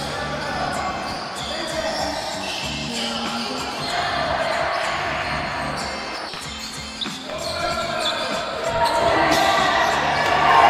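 A basketball bouncing on a gym floor in play, the impacts ringing in a large, reverberant sports hall.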